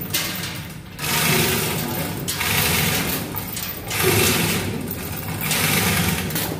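Loud, steady mechanical clatter of a running engine in a cramped engine room, swelling and dipping every second or so.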